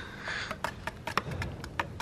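Flat stirring stick knocking and scraping faintly against the sides of a metal paint tin as metal-flake is stirred into the paint: scattered, irregular light clicks, with a brief hiss fading out in the first half second.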